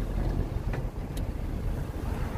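Wind buffeting the microphone: a steady low rumble, with a couple of faint ticks.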